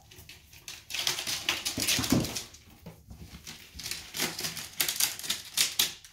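Ferrets scrambling and burrowing through cornstarch packing peanuts: a rapid rustling crackle that starts about a second in and comes in bursts, loudest around two seconds in.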